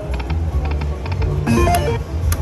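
Dragon Link video slot machine spinning its reels: a run of quick electronic ticks over the game's low background music, then a short rising chime near the end as the reels stop on a small win.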